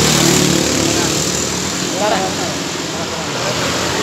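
Small motorcycle and scooter engines running on a road with passing traffic noise, loudest near the start as one passes close and easing off afterwards.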